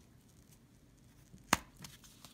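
A single sharp click about one and a half seconds in, over quiet room tone: a pencil point being pushed through a cardboard color-wheel disc to poke a hole.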